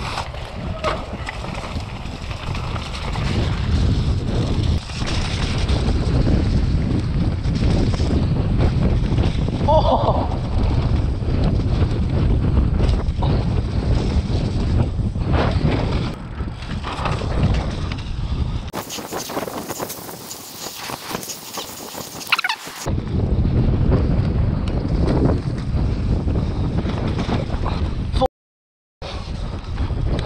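Downhill mountain bike ridden fast over a rough, rocky trail: wind buffeting a helmet-camera microphone, with tyre rumble and the bike rattling and knocking over rocks and roots. For a few seconds past the middle the low rumble drops away, leaving a brighter hiss.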